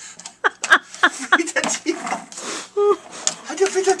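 Mainly people's voices: short exclamations and chatter without clear words.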